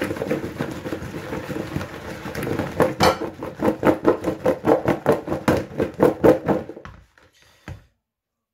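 Halved baby potatoes and carrots, slick with oil and seasoning, rattling and tumbling in a mixing bowl as it is shaken to mix them. There is a steady rustle at first, then rhythmic shakes about four a second from about three seconds in, stopping shortly before the end.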